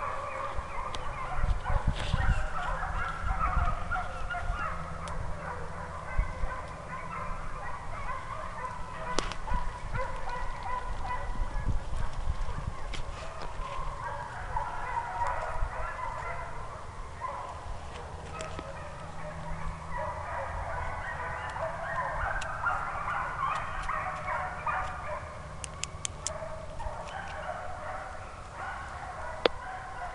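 A distant pack of hunting hounds baying in full cry, many voices overlapping into a continuous chorus that swells louder in the second half.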